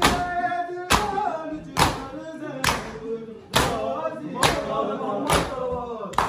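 A group of men doing matam, beating their chests in unison, with a loud slap about once a second, seven strokes in all. Between the strokes, male voices sing a Punjabi noha (lament).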